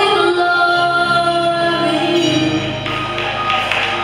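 Children singing with musical accompaniment, holding long notes.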